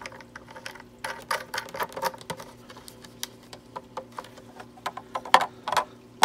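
Plastic nut being screwed by hand onto the threaded bottom of a plastic siphon through a plastic grow bed: irregular small clicks and rubbing of plastic on plastic, with a few louder knocks near the end as the tray is handled.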